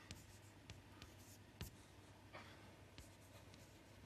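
Chalk writing on a chalkboard: faint, scattered taps and short scratches as a word is written.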